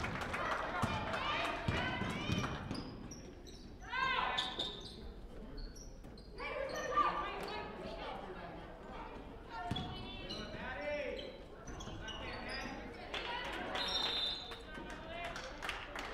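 A basketball bouncing as it is dribbled on a hardwood gym floor, with voices calling out now and then.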